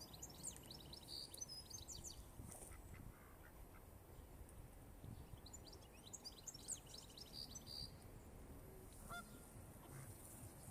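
Faint bird calls: two bursts of quick, high-pitched chirping, one in the first two seconds or so and another from about five to eight seconds in, over a low background rumble.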